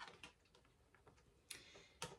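Near silence with a few faint clicks and a brief soft rustle as gold-foil tarot cards are picked up and fanned in the hand.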